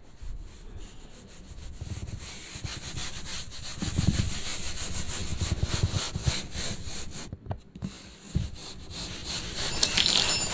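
A rapid, rhythmic scraping noise, stroke after stroke, that breaks off briefly about seven and a half seconds in.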